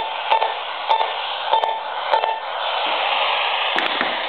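AM radio tuned between stations giving a steady hiss of static, broken by short pulses of interference about every two-thirds of a second as a handheld remote control's button is pressed near it: the remote's electromagnetic interference picked up by the radio. The pulses stop a little past halfway, leaving the static, and a click comes near the end.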